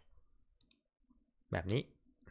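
A computer mouse clicking faintly, a few short light clicks, with a man's voice speaking briefly near the end.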